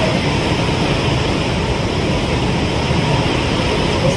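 A steady, loud rushing and rumbling noise with no clear pattern, like air-conditioning or recording hiss in the hall.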